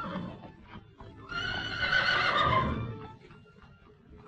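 A horse neighs once, a long wavering whinny starting about a second and a half in. Before it, hooves clop on cobbles.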